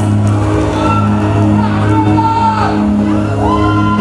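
Live Bihu band music over a PA system: sustained low notes under a melody line that glides up and down, with shouting.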